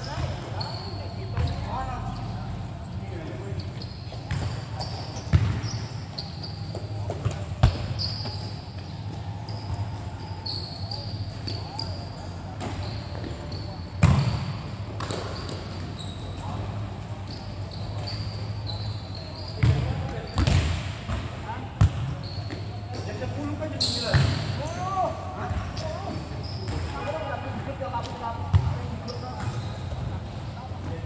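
Futsal ball being kicked and bouncing on the court: sharp thuds every few seconds.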